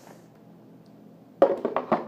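Baby Alive doll set down on a plastic toy potty: a sudden short run of clattering plastic knocks about a second and a half in, after quiet room tone.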